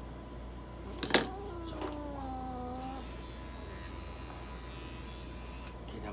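A sharp click about a second in, then a Ragamuffin cat, held on the exam table, lets out one long low yowl that falls slightly in pitch and lasts about two seconds.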